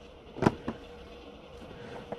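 Two short taps or knocks, a sharp one about a quarter of the way in and a softer one just after, over a faint steady hum.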